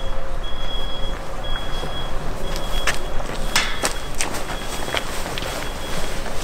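Outdoor background rumble with a high-pitched beep repeating about once a second, and a few sharp clicks around the middle.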